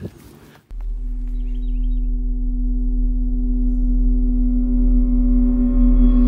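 Sustained electronic drone: a steady low tone with a stack of overtones that starts about a second in and slowly swells louder and brighter. It is the opening of a record label's logo sting.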